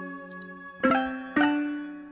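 Short musical sound-effect samples played by an Android app through SoundPool: one note is still ringing and fading, a new one starts a little under a second in and another about half a second later, all overlapping. They pile up because the earlier sound is not stopped before the next one plays.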